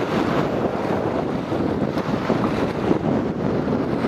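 Strong wind buffeting the microphone as a steady rushing noise, over sea surf washing against the rocky shore.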